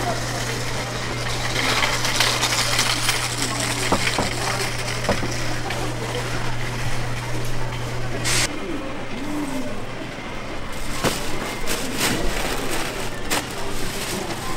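Busy market ambience: indistinct background chatter with scattered clicks and clatter. A steady low hum cuts off about eight seconds in.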